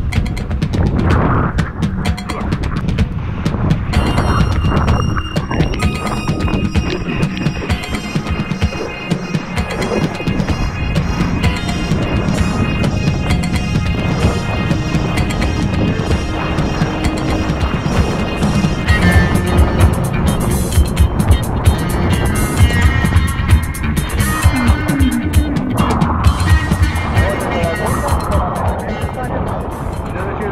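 Music playing over loud, continuous wind buffeting an action camera's microphone.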